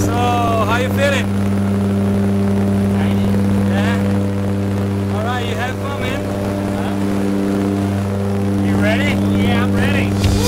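Steady, even drone of a jump plane's propeller engines heard from inside the cabin, with a few short raised voices over it.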